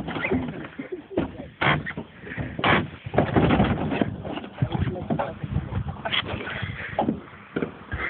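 People shut inside a plastic wheelie bin, thumping and knocking against it with muffled voices; the bangs come irregularly throughout, heaviest about three to four seconds in.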